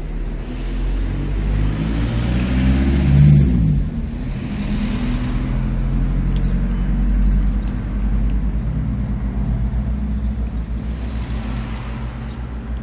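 Car engine running close by, its sound swelling and falling as traffic passes, loudest about three seconds in.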